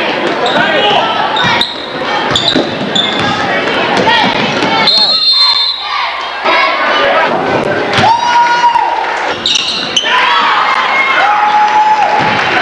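Basketball bouncing on a hardwood gym floor during play, among many spectators' voices and shouts echoing in the gym, with a few short held tones.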